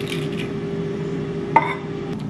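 Steady hum of a running air fryer, under soft clinks of a knife against a bowl as avocado is cut over a salad. A single sharper clink comes about one and a half seconds in.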